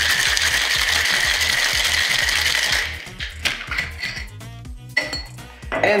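Ice cubes rattling hard inside a metal-and-glass cocktail shaker as a drink is shaken, a dense steady rattle that stops about three seconds in. Background music with a steady beat runs underneath, with a few light clicks after the shaking stops.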